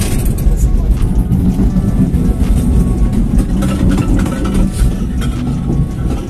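Loud, steady low rumble inside a ropeway cable-car cabin as it runs into the terminal station.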